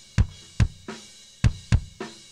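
Kick drum recorded through a Verge modeling microphone, its emulation set to the Berlin K86 model, played back: about five deep thuds at an uneven rock beat, with some spill from the rest of the kit.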